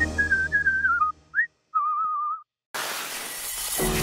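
Cartoon whistle sound effects: a short whistled tune over music that fades out, a quick rising whistle, then a brief wavering whistle. After a short gap comes about a second of hissing, shattering noise, ending in a sharp hit as jingle music starts.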